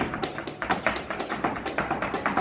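Flamenco footwork (zapateado): the dancer's shoes striking the wooden stage in a quick, uneven run of sharp taps, several a second, with the seated palmero's handclaps keeping time.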